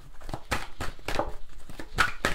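A deck of fortune-telling cards shuffled by hand: a quick, irregular run of papery flicks and slaps as the cards slide off one another, several a second.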